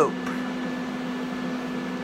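Steady low electric hum with a faint hiss from a small electric fan running.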